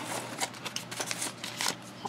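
Hands rummaging through packing peanuts and bubble wrap in a cardboard box: an irregular run of light rustles and small clicks.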